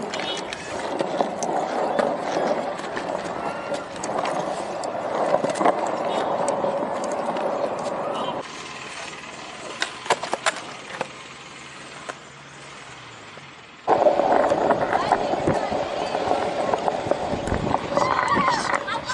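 Small hard wheels rolling on a concrete path, a steady rumbling hiss. About eight seconds in it drops to a quieter stretch with a few sharp skateboard clacks, then the loud rolling comes back suddenly near the end.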